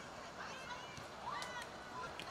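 Faint high-pitched shouts of young footballers on the pitch, two brief calls about half a second and a second and a half in, over a low outdoor background from the match footage.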